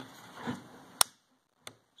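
A single sharp click about halfway through, then a much fainter click: the safety selector lever of a CZ Scorpion Evo 3 S1 pistol being flipped by thumb.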